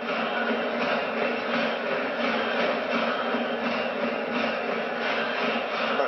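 Baseball stadium crowd noise: a steady, unbroken din of the crowd cheering.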